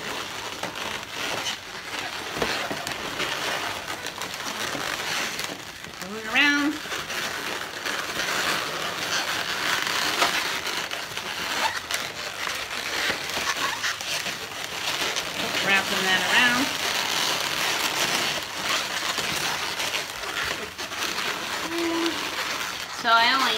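Inflated latex twisting balloons rubbing and creaking against each other as one is wrapped round and round a balloon sculpture's body to thicken it. There is a steady crinkly rubbing throughout, with a couple of short rising squeaks, about six seconds in and again near sixteen seconds.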